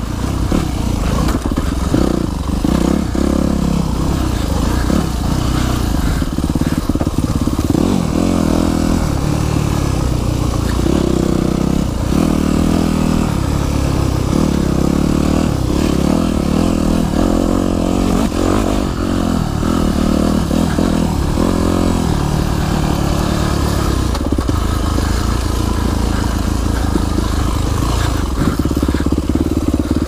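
Yamaha YZ250F four-stroke single-cylinder dirt bike engine running under way, its revs rising and falling every second or two with the throttle.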